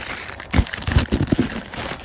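Brown packing paper and a cardboard box crinkling and rustling as they are handled and pulled open, with a few dull bumps about half a second to a second and a half in.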